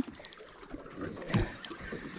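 Quiet ambience of a small boat drifting at sea: water lapping against the hull with light wind, and a few faint ticks.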